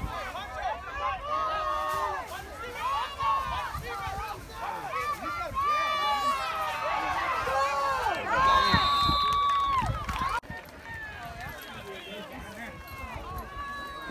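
Sideline spectators shouting and cheering, several voices overlapping with long drawn-out yells, loudest with one held yell about eight to ten seconds in. The sound drops abruptly about ten seconds in and turns to quieter chatter.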